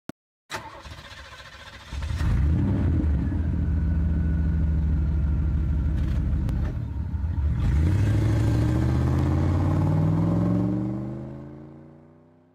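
A motor vehicle engine running steadily, then accelerating, its pitch rising from about eight seconds in, and fading away near the end.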